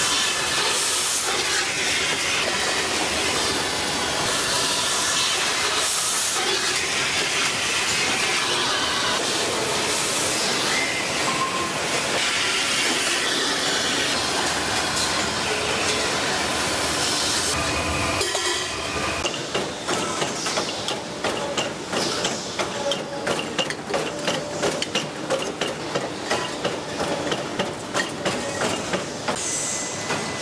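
Stainless steel tube-processing machinery running: a steady hissing mechanical noise for about the first eighteen seconds, then a regular run of sharp clicks and knocks, about two a second.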